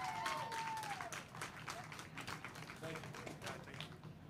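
Small audience applauding: scattered handclaps that thin out and fade toward the end, with a voice calling out over them at the start.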